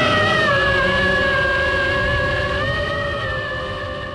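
FPV racing quadcopter's brushless motors whining at a fairly steady pitch. The pitch steps up slightly a little past halfway, and the sound gradually fades.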